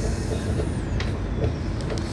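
Passenger train running, heard from on board as a steady low rumble, with a sharp click about a second in.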